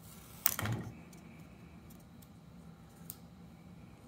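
Hands handling a drone's plastic landing-gear leg and a peeled sticker cover: a short crackling scrape about half a second in, then a few faint ticks.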